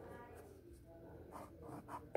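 Faint scratch of a pen drawing a line along a ruler on a paper workbook page.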